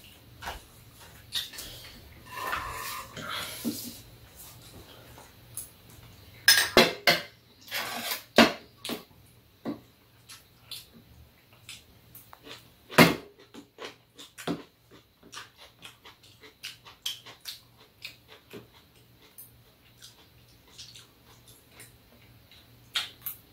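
Metal spoon and chopsticks clinking against bowls and plastic food containers during a meal: scattered light clicks, a quick run of loud clinks about a third of the way in, and one sharp loud clink a little past halfway.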